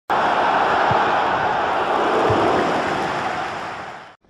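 A loud, steady rushing noise from the animated logo intro's sound effect. It starts abruptly, has two low thuds about one and two and a quarter seconds in, and fades out near the end.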